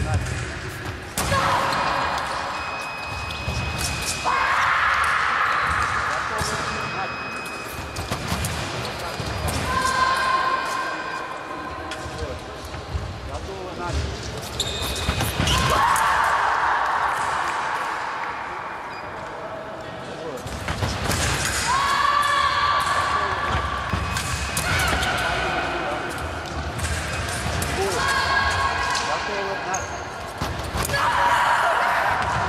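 Fencing bout in a large echoing hall: quick thudding footwork on the piste and sharp knocks, with loud shouts from the fencers at several points, strongest around a touch about halfway through.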